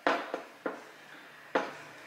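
Four sharp knocks or clicks, the first the loudest, each dying away quickly.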